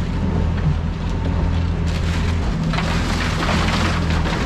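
Boat's outboard engine running steadily underway. About two seconds in, a loud rushing noise sets in: ice being poured from a bag into the fish hold.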